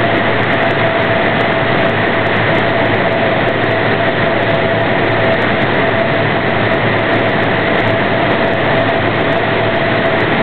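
Loud, steady turbine engine noise from an aircraft running on the airfield, probably the C-130 transport plane, with a constant whine over a rushing hiss that does not change.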